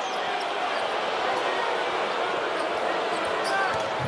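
Steady crowd noise filling a large basketball arena during an NBA game.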